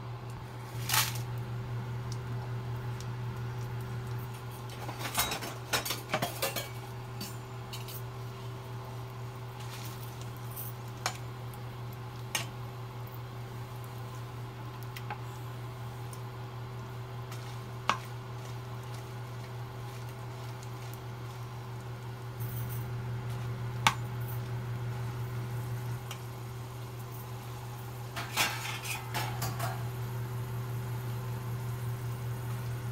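A metal slotted skimmer clinking and scraping against a frying pan as dried red chillies are turned in hot sesame oil, in scattered knocks with a flurry about five to six seconds in and another near the end. A steady low hum runs underneath.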